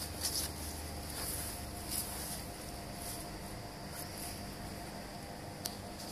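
A few faint knocks as a wooden pole target is stood up on a wooden pallet, over a steady low background hum.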